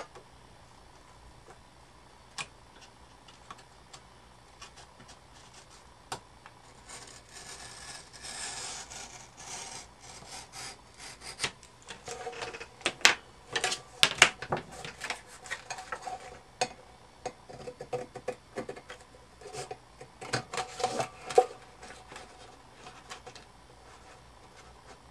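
Craft knife trimming paper wrapped on a tin can, drawn along a plastic ruler: quiet at first, then a scratchy scraping from about seven seconds in, followed by a run of sharp clicks and scrapes through most of the second half.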